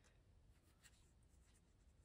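Near silence: room tone, with a few faint light ticks about half a second to a second in.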